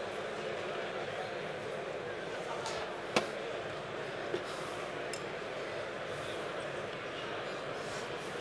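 Steady background noise of a large exhibition hall, with one sharp click of glassware or a bottle a little after three seconds and a fainter click about a second later.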